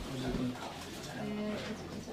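A person's voice talking indistinctly in a small room, with no words that can be made out.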